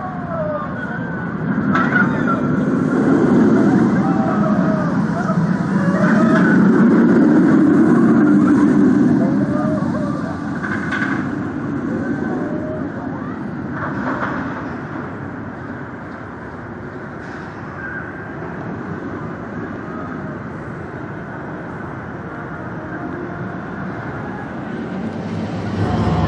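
B&M hyper coaster train running along its steel track, a steady rumble that swells a couple of seconds in, peaks as the train passes and fades over the second half. People's voices are heard faintly in the background.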